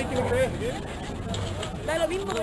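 Indistinct voices talking in the street, over a steady low background noise.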